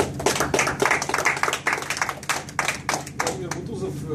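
A small audience clapping, the claps irregular and thinning out after about three and a half seconds.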